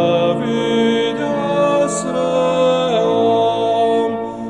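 A man singing a slow Reformed hymn over sustained pipe organ chords, his voice moving from note to note with a short slide near the end.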